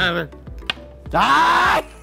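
A man's loud, drawn-out cry of 'ah' about a second in, the reaction to downing a strong shot, over background music. A short click comes just before it.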